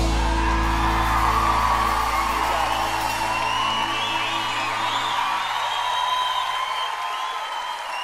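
A live band's final chord rings out and slowly fades, its low notes dying away near the end, under an audience cheering and whooping.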